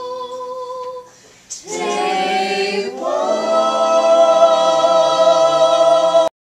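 A group of students singing in mixed voices: one held note breaks off about a second in, then the group comes in and holds a loud final chord from about three seconds on.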